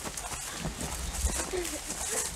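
Footsteps of two people walking on a dirt and gravel path: a run of uneven footfalls and scuffs.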